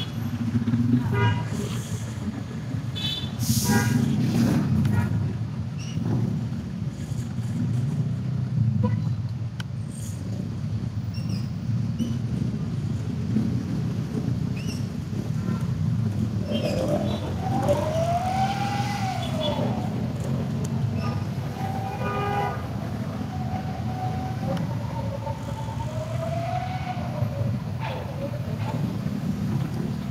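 Congested road traffic: a steady low rumble of car, truck, bus and motorcycle engines moving slowly. Short higher-pitched sounds come in the first few seconds, and a tone that glides up and down comes a little past halfway and again near the end.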